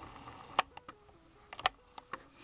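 Faint whine of a camcorder's zoom motor as the lens zooms in, with a few sharp small ticks, the loudest about half a second in and again around a second and a half in.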